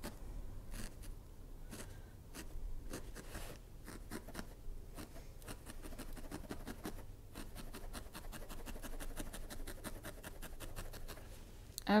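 Single barbed felting needle jabbing repeatedly through loose wool roving into a foam felting pad: a run of faint, quick pokes, several a second, with a brief lull or two, as the white wool is felted down around its edge.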